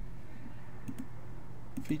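Two quick computer mouse clicks about a second in, over a low steady hum.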